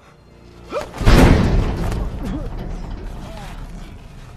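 A sudden heavy impact about a second in, after a brief rising swell, leaving a long, slowly fading low rumble. A few faint groans sound over the tail.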